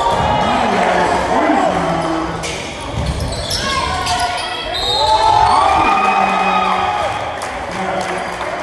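Basketball game in a gym: the ball bounces on the hardwood floor amid players' and onlookers' voices, all echoing in the large hall.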